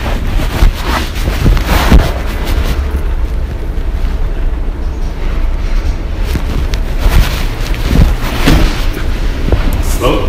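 Shopping cart rolling over a hard store floor with the camera riding on it: a steady low rumble with scattered knocks and rattles.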